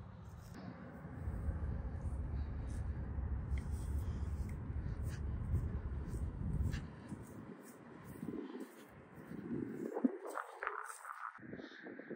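Wind rumbling on the phone microphone in an open field, dying away about seven seconds in, followed by faint rustling and handling knocks.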